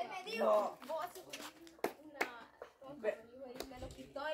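Faint talking voices of a few people, with two sharp clicks close together about two seconds in.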